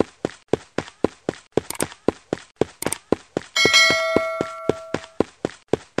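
Animated subscribe-button sound effects: two sharp clicks, then a notification bell chime that rings for about a second and a half. Under them runs an even series of thumps, about four a second.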